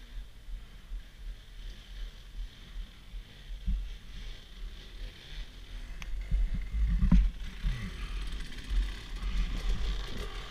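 Dirt bike engine revving as a rider climbs the trail, getting louder from about six seconds in, with short rises and falls in revs over a low rumble.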